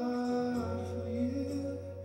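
Live worship band playing a soft, sustained passage of a song: held notes, with a low bass note coming in about half a second in, and no clear drum hits.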